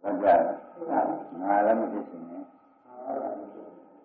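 Speech: an elderly monk preaching in Burmese on a 1960 recording, in short phrases with a brief pause past the middle.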